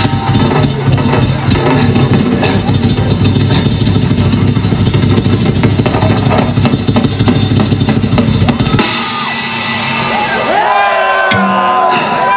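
Live heavy-metal band playing with the drum kit loudest, fast bass-drum and snare strokes under cymbals, until the music stops abruptly about nine seconds in. Near the end a voice shouts a long, wavering call through the PA.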